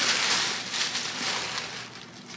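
Tissue paper rustling and crinkling as new sandals are unwrapped from their shoe box, loud at first and dying down toward the end.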